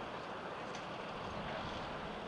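Steady outdoor background hiss, with a couple of faint short ticks partway through.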